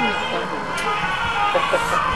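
Several people's voices overlapping, over a steady background of held high tones.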